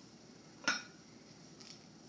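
A glass mason jar being handled: one sharp clink about two-thirds of a second in, against quiet room tone.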